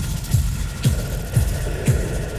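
Live electronic dance music: a deep four-on-the-floor kick drum about twice a second, with a sharp clap or snare on every other beat and a steady high synth tone coming in about halfway through.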